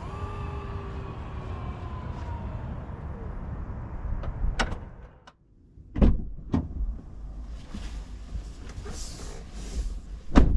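The 2024 Mazda CX-90's power tailgate motor closes the liftgate: a steady electric whine slowly falling in pitch for about three and a half seconds, then a sharp latch click as it shuts. After a brief silence come two dull thumps.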